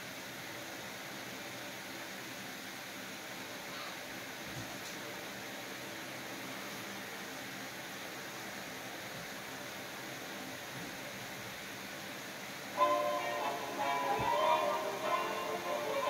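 Steady low hiss of room tone while the television shows silent warning screens. About three-quarters of the way in, music suddenly starts from the television's speakers, heard across the room.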